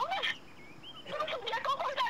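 Speech only: an angry voice talking fast, its pitch swinging sharply up and down, broken by a short pause near the middle.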